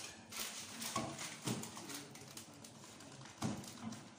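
Cans and bottles being set down and shifted on wooden shelves: a few separate knocks and clatters, the loudest about a second in and again near the end.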